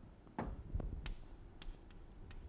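Chalk writing on a chalkboard: a handful of short taps and scratches as letters and an arrow are written, the strongest about half a second in.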